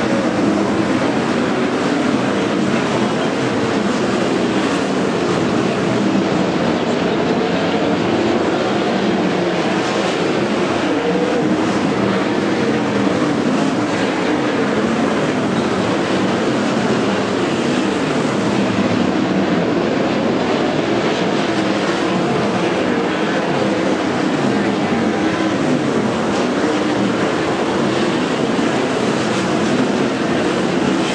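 A field of winged sprint cars' 410 cubic inch methanol V8 engines lapping a dirt oval. They make a loud, continuous drone whose pitch rises and falls as the cars pass and go round the turns.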